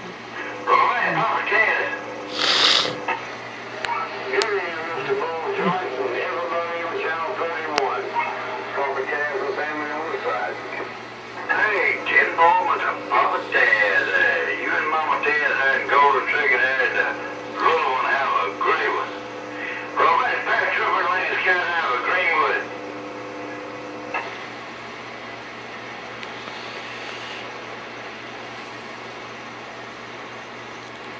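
Voices of other CB operators coming in over a Galaxy Saturn base radio's speaker in broken transmissions, with a brief sharp burst of noise about two and a half seconds in. After about 22 seconds the talk stops and only a steady background hiss and hum remain.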